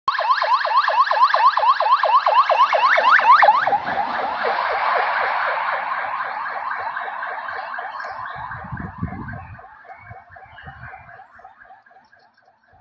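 Ambulance siren on a rapid yelp, about five rising sweeps a second, loud as it passes close in the first few seconds, then a little lower in pitch and fading as the ambulance drives away.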